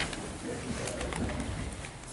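People settling into chairs: a low rumble with a few faint knocks and rustles.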